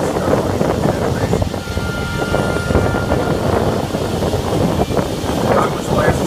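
Steady running noise of a tour tram in motion, with wind buffeting the microphone.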